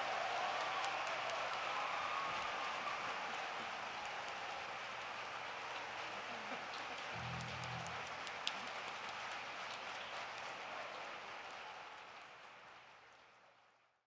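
A concert-hall audience applauding with steady clapping, which fades out over the last few seconds.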